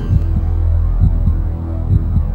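Deep, steady droning hum with a low throbbing pulse about once a second, like a slow heartbeat: an eerie background soundtrack drone.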